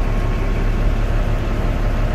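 Caterpillar C12 inline-six diesel engine idling, heard from inside the cab as a steady, even low rumble.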